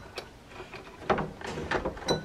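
Wires being handled: light clicks and rustling as the test leads are moved about in the opened fan light housing, with a sharp click just after the start and a run of small clicks and rattles in the second half.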